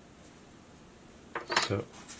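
Quiet room tone, then about a second and a half in a brief clatter of hard objects being handled, followed by a man saying "So".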